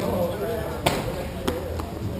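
Sharp knocks of a hockey stick and puck ringing out in a large, echoing rink, two clear strikes about half a second apart and a lighter one just after, over faint background voices.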